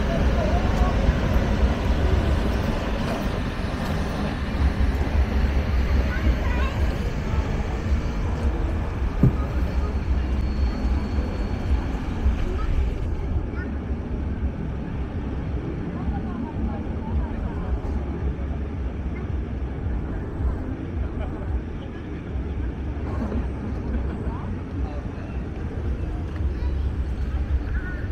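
Outdoor city ambience: indistinct chatter of people over a steady low rumble of traffic.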